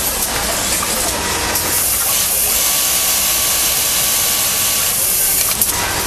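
Automatic trouser-hemming machine (VI.BE.MAC 3022BHE) running with a steady mechanical noise. A loud air hiss starts about one and a half seconds in and cuts off shortly before the end.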